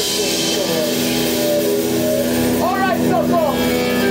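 A live rock band's drums stop and a held chord rings on through the amplifiers as a steady drone. A voice calls out over it with a rising and falling pitch, about three seconds in.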